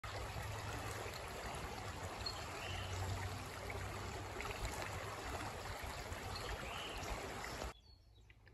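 Shallow creek flowing over gravel, a steady rush of water that cuts off suddenly near the end.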